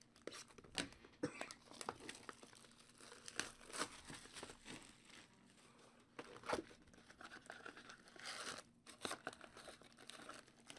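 Faint handling noise of a cardboard hobby box of Topps Chrome football cards being opened: scattered light taps and clicks and crinkling of the foil-wrapped packs, with a short tearing sound about eight seconds in.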